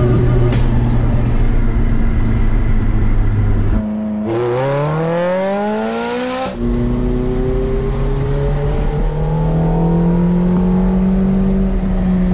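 Ferrari F430's V8 engine under way: steady running, then about four seconds in a hard rev that climbs quickly in pitch for two to three seconds, then pulling steadily again with the pitch slowly rising.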